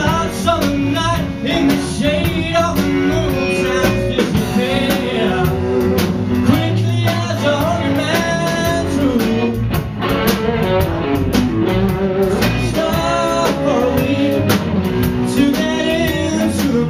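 Live blues-rock band playing: electric guitar and drum kit, with a man singing.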